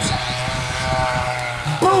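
Motor of a greyhound track's mechanical lure running past the starting traps: a steady mechanical whine made of several held tones.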